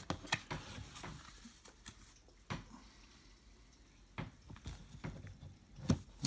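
Trading cards being handled and set down: a few soft taps and slides of card stock, several in quick succession at first, then single ones spaced a second or two apart.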